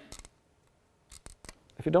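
Short clicks and snaps from a small model airplane as its vertical fin is pulled out, in two brief clusters about a second apart. A man's voice starts near the end.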